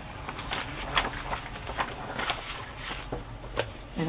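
Paper and card pages being handled and shifted by hand on a cutting mat: a string of soft rustles and taps.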